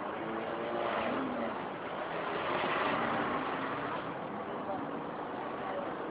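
Steady vehicle or traffic noise with indistinct voices talking over it, a little louder around the middle.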